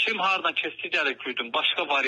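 A man talking continuously in Azerbaijani, his voice thin and band-limited as if heard over a telephone line.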